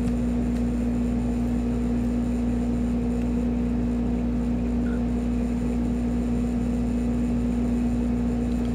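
A steady machine hum with a constant low tone and a rumble beneath it, unchanging throughout.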